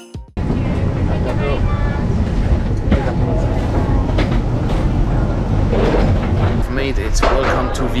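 Steady low rumble of airliner and jet-bridge ambience at the aircraft door as passengers disembark, with their voices and chatter around it, clearer near the end.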